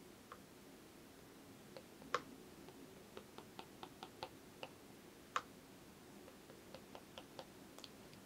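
Faint, irregular light taps of a paintbrush handle's end dotting paint onto paper: a dozen or more small ticks, two of them sharper than the rest.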